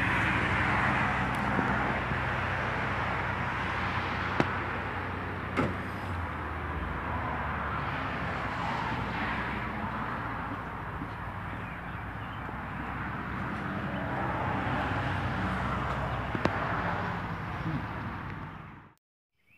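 Steady outdoor background noise with a faint low hum, broken by a few short sharp clicks.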